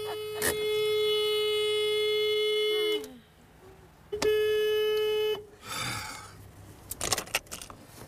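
Car horn honking in a single steady tone: one long blast that ends about three seconds in, then a second blast of about a second. It is the other driver honking to make the car facing him in the narrow roadworks lane back up.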